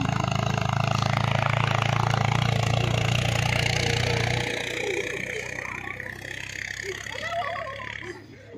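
A steady low hum that stops abruptly a little past halfway, under the voices of people talking and calling.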